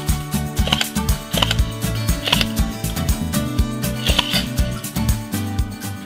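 Clear electric airsoft pistol (an HK P30 replica) test-firing a string of shots, heard as sharp clicks roughly two or three a second, over background music.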